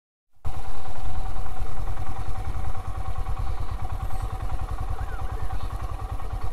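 Motorcycle engine running at low speed, a rapid low throb that cuts in about half a second in, as the bike creeps along. A few faint short chirps sound near the end.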